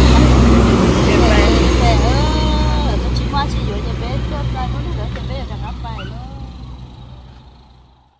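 Low engine rumble of a heavy cargo truck driving past on the road, loudest at the start and dying away over the next few seconds, with voices talking over it.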